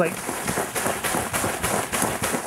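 Soybean plants being shaken vigorously by hand, their leaves and stems thrashing in a dense, rapid rustle full of quick crackles.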